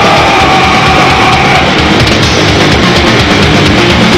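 A thrash metal band playing live at full volume: distorted electric guitars, bass and drums driving a fast, steady beat.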